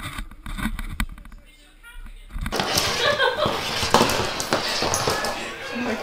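Muffled knocks and rumbling from a GoPro camera in its sealed case as a puppy mouths and tumbles it. About two and a half seconds in, the sound opens up into people talking and laughing.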